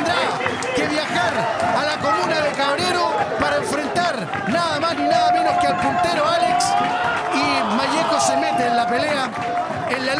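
Home football supporters in the stands chanting and shouting together, many voices overlapping, with some held sung notes partway through, as they celebrate their team's win.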